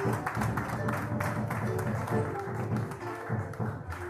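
Live acoustic Latin American folk band playing with a steady rhythm: strummed acoustic guitars, an upright bass and hand-drum percussion.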